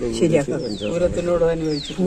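A woman talking, with a bird in the background giving two short whistled calls that fall in pitch, about a second apart.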